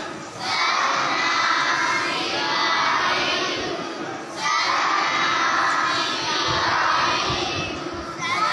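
A large group of children's voices reciting together in unison, in long phrases of about four seconds with a short break between each.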